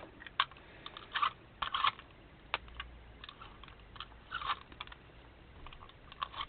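Paper rustling and crinkling as hands move and press paper pieces onto a journal page: a string of short, irregular rustles and taps.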